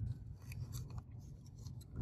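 Faint handling noise: a few light clicks and some rubbing from small objects moved by hand, over a low steady hum.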